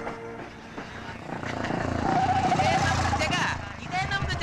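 Busy street ambience of passers-by talking and traffic, with a wavering high tone about halfway through and a motorcycle engine approaching near the end.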